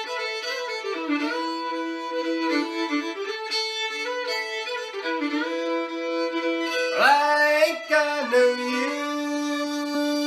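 Solo fiddle playing an Appalachian old-time tune: a quick bowed melody of short notes, growing louder with a sliding swoop up into a higher note about seven seconds in.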